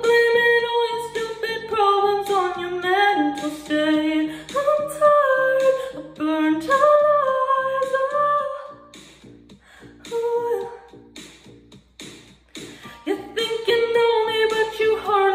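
A woman singing a pop ballad in long held notes that slide between pitches. Her voice stops about nine seconds in, leaving a few quieter seconds, and comes back near the end.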